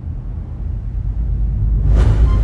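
A deep, low rumble that grows steadily louder, with a brighter, higher wash joining it near the end: a cinematic swell.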